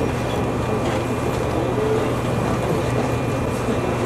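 Steady low hum of a stationary electric train standing at the platform, with a faint murmur of people around it.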